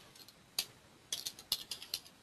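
Typing on a computer keyboard: a single keystroke about half a second in, then a quick, uneven run of keystrokes through the second half.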